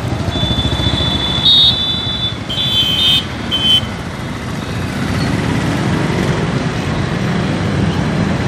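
Street traffic of motorcycles, scooters and auto-rickshaws running past, with a steady engine rumble. Several short shrill high-pitched toots sound during the first few seconds. Later, an engine's pitch rises slowly as it pulls away.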